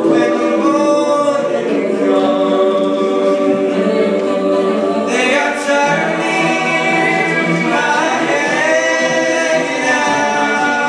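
A cappella vocal group singing into microphones: a male lead vocalist over held chords from the backing choir, with no instruments.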